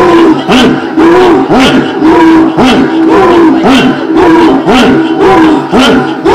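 Loud voice chanting through a public-address system in a steady rhythm, about two syllables a second, each rising and falling in pitch with a breathy burst on every beat.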